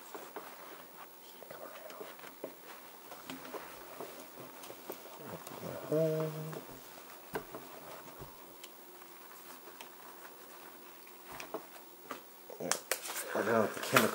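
Faint rustling and small clicks of a microfiber towel rubbed by hand over a small die-cast metal toy car, drying it.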